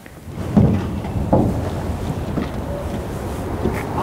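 Wind buffeting the microphone: a steady low rumble, with two heavier thumps about half a second and a second and a half in.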